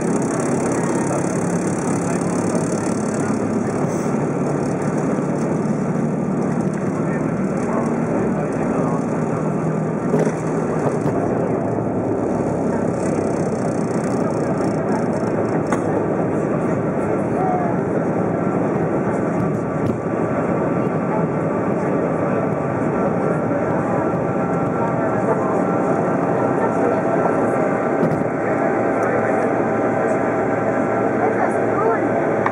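Airliner cabin noise at takeoff power: the engines run loud and steady through the takeoff roll, lift-off and start of the climb, heard from inside the cabin.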